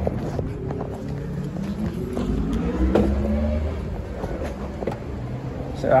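A motor vehicle's engine climbing in pitch over a couple of seconds as it accelerates, over a low rumble, with scattered clicks and rustles.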